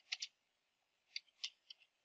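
Faint computer keyboard keystrokes as a command is typed: a pair of clicks just after the start, then three or four more in quick succession from about a second in.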